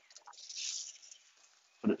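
Brief soft hiss and scrape of a whole roasted chicken being pulled off a ceramic vertical chicken roaster with metal tongs, with a faint tick near the start.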